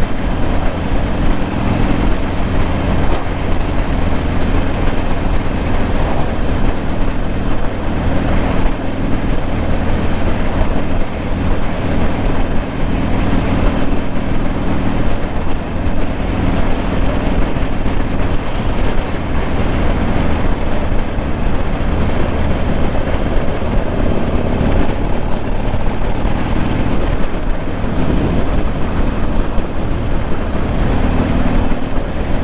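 Motorcycle engine running steadily at road speed, heard from on the bike, under heavy wind noise on the microphone.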